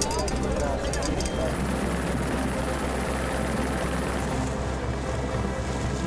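Background music with a steady low beat over the sound of a press scrum: cameras clicking in the first second or so, then the noise and voices of a crowding group of reporters.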